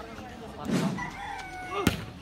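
A rooster crowing once, a drawn-out call, over background crowd voices; near the end a single sharp smack, a volleyball being struck.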